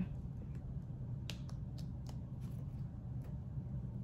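Faint, scattered small clicks and ticks as a weeding hook picks and peels cut adhesive vinyl off its backing sheet, over a low steady hum.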